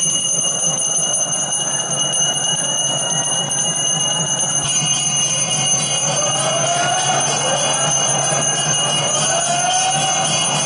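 Temple bells ringing without a break during the aarti lamp offering, a steady metallic ringing. A second ringing joins about five seconds in.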